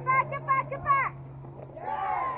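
High-pitched voices shouting: a quick run of calls in the first second, then quieter.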